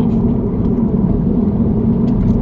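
Steady low road and engine noise inside a car's cabin while driving.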